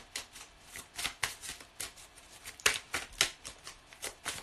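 A deck of tarot cards shuffled by hand, the cards slapping and flicking against each other in a quick, uneven run of several clicks a second, loudest a little past halfway.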